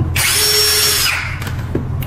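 Cordless drill-driver running for about a second with a steady whine as it backs out a bolt from an electric scooter's battery compartment cover, then stopping, followed by a few light clicks.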